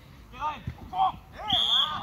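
Football players shouting on the pitch, then a referee's whistle blows about one and a half seconds in, a steady shrill blast held for about half a second to stop play.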